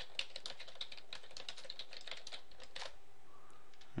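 Typing on a computer keyboard: a quick, irregular run of key clicks that stops about three seconds in.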